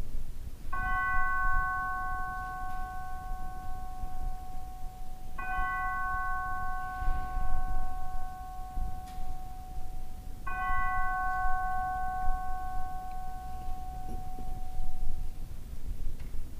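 An altar bell struck three times at the elevation of the chalice after the consecration, each stroke ringing out clearly and fading slowly over several seconds.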